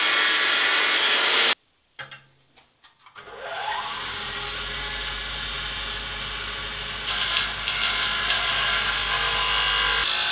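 Cut-off disc cutting through saw-blade steel, stopping abruptly about 1.5 s in. After a few clicks, a bench grinder motor spins up with a rising whine and settles into a steady hum. From about 7 s the steel is pressed against the grinding wheel and grinds louder and brighter.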